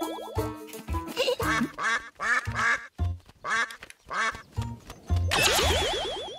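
Bouncy cartoon music: a bass line of short low notes under quick wobbling higher notes. About five seconds in comes a sci-fi ray-gun zap effect, a swoosh with a fast fluttering pattern and a wavering high whine.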